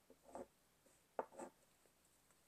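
Faint scratchy strokes of a chunky water-soluble Stabilo Woodies pencil drawing over a paper collage surface: a short stroke about a third of a second in and another just over a second in.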